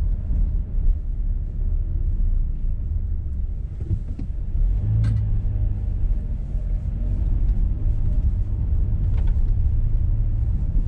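Car engine and road noise heard from inside the cabin while driving slowly: a low, steady rumble, with a steadier engine hum from about halfway in and a few faint knocks.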